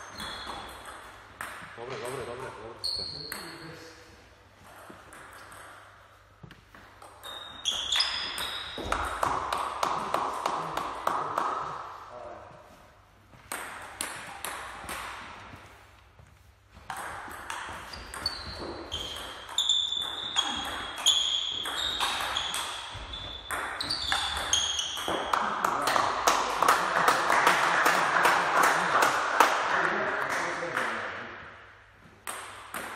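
Table tennis ball clicking off paddles and the table in a series of rallies, with short gaps between points.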